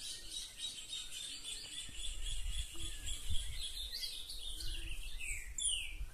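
Green-winged saltator (trinca-ferro) singing faint whistled phrases amid thin high bird chirps, with two clearer downward-sliding whistles near the end.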